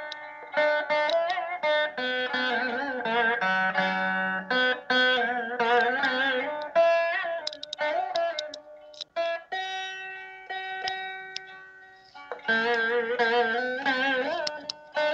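Carnatic veena played solo: plucked notes with sliding, wavering pitch ornaments. Past the middle a single note rings out and slowly fades, and busier playing resumes near the end.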